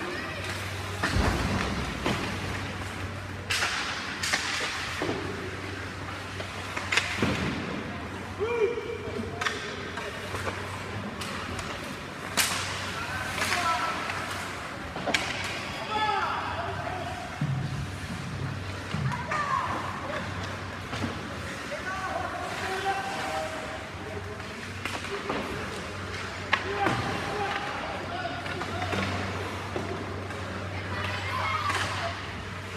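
Ice hockey game heard from the stands: sharp knocks of sticks and puck on the ice and boards come every second or two, with scattered shouts and voices over a steady low rink hum.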